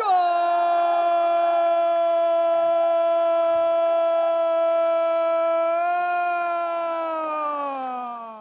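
A football TV commentator's long drawn-out goal shout, a single voice holding one note for about seven seconds, lifting slightly near the end and then falling in pitch as it fades.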